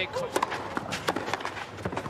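Tennis rally on a clay court: sharp clicks of racquet strikes and ball bounces mixed with a player's quick, scuffing footsteps on the clay.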